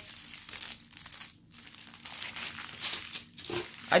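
Small plastic bags of diamond-painting drills, joined in a long strip, crinkling irregularly as they are handled, with a brief lull about a second and a half in.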